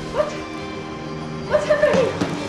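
A person's short high cries over background music: a brief rising yelp just after the start, then a louder, longer wavering cry near the end.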